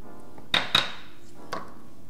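Two quick knocks against a stainless steel mixing bowl, each with a short metallic ring, as chopped cilantro is scraped into it; a fainter knock follows about a second later.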